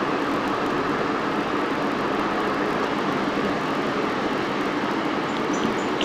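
Steady background noise: an even hiss with a faint hum, unchanging throughout.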